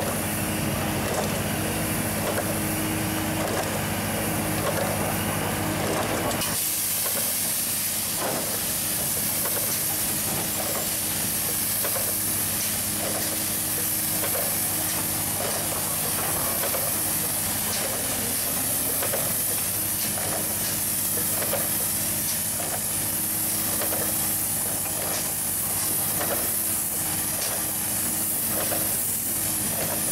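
SprayBot Ultra's spray gun spraying coating, a loud steady hiss that starts about six seconds in, over the steady hum of the machine's running engine. Faint regular ticks about once a second run under the hiss.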